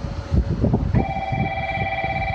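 Wind buffeting the phone's microphone, then about a second in a steady electronic ringing tone from the platform speakers starts and holds: a station's train-approach warning bell.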